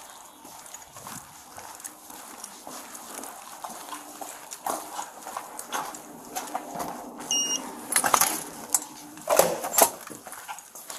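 Footsteps on concrete, then a short electronic beep from a door's badge reader about seven seconds in. Loud metal clunks follow as a steel door's latch releases and the door swings open.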